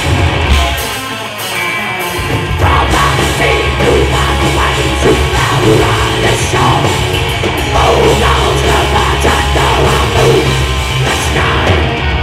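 Live blackened speed metal band playing: distorted electric guitars, bass and drum kit. The low end drops out briefly about half a second in and the full band comes back in at about two and a half seconds, with harsh vocals over it after that.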